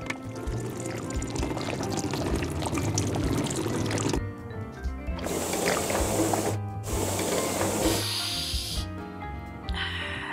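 Background music with a bass beat, over which thick wall paint pours into a plastic roller tray for about the first four seconds. Later come two bursts of hissing noise, about a second and a half each.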